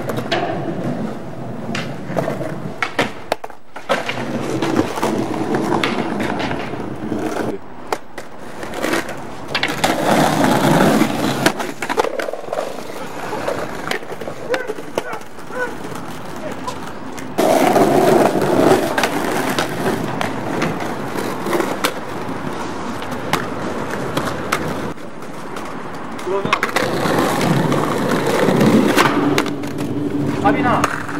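Skateboards on stone paving: wheels rolling and many sharp clacks of boards being popped, landing and slapping down on granite.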